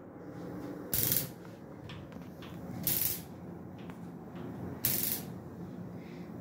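Gas burners of an Atlas Agile Up Glass stove lit one after another: three short bursts about two seconds apart as the spark igniter fires and the gas catches at each burner, over a low steady hiss from the burners already burning.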